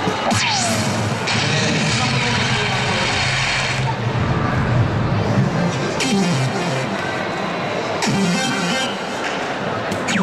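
Electronic award fanfare and sweeping sound effects from a DARTSLIVE soft-tip dart machine, set off by a third bullseye in the round (a hat trick). They play over the steady chatter of a large hall.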